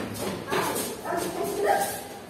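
Young children's voices in a classroom: several short, high-pitched calls and cries in quick succession.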